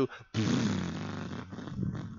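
A man's mouth-made raspberry, a long sputtering "pffft" standing in as a joke sound effect for flux squirting out of a syringe. It starts about a third of a second in, loud at first, and fades away over about a second and a half.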